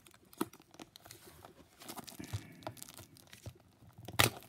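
Clear plastic shrink-wrap on a cardboard box being picked at and torn by fingers: faint, scattered crinkling and small tearing crackles as the tight wrap resists being gripped.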